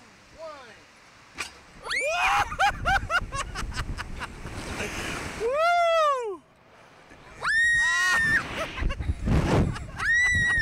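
Riders of a slingshot reverse-bungee ride screaming as they are shot into the air, with wind rushing over the microphone. The screams come as several rising-and-falling cries and one long high one after about seven and a half seconds, with a run of sharp clicks in the first few seconds.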